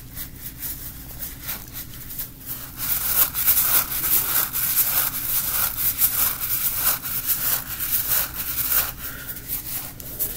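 Hands rubbing and squeezing a blue rubbery squeeze toy, a fast run of scratchy friction strokes that grows louder about three seconds in and eases off near the end.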